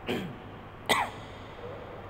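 A man coughs twice into a handheld microphone, under a second apart, the second cough louder. A steady low hum runs underneath.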